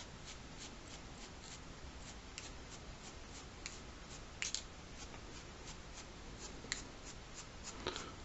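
Paintbrush bristles being flicked to spatter acrylic paint onto paper: a faint, steady run of short ticks, about three a second, with a few louder flicks among them.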